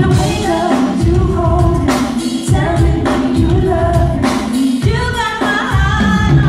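Live R&B performance: a female lead singer singing over a band with heavy, pulsing bass and drums.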